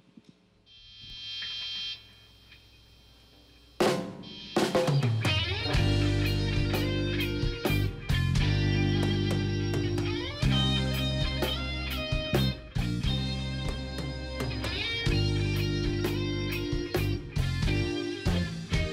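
A reggae band starting a song live: after a brief high ringing tone in the first couple of seconds and a pause, a hit about four seconds in brings in the band, and from about six seconds drum kit, bass guitar, electric guitars and keyboard play a steady groove.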